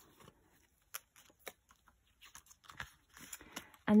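Faint, scattered rustles and light clicks of hands handling banknotes and a plastic binder pocket.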